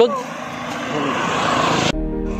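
A rushing noise that swells steadily for about a second and a half, then cuts off suddenly.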